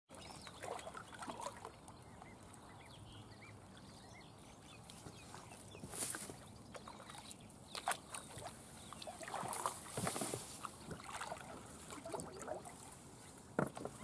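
Kayak paddle strokes with water splashing, and tussock grass rustling against the kayak as it pushes through, in scattered bursts. Faint bird calls come early on, and there is a sharp knock near the end.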